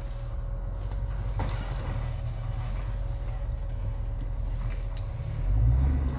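Off-road Jeep's engine running at low revs as it crawls over rocks, a steady low rumble that swells louder about five and a half seconds in.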